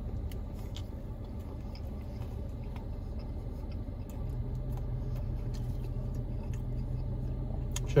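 Steady low hum of a car idling, heard from inside the cabin, with faint chewing and small mouth clicks from someone eating a bite of folded pizza sandwich.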